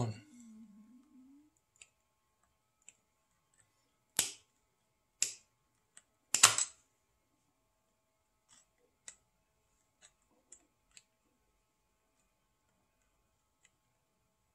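Three sharp knocks about four, five and six and a half seconds in, the last the loudest, then a few faint ticks: needle-nose pliers and a brass motorized ball valve with a plastic actuator housing being handled and set down.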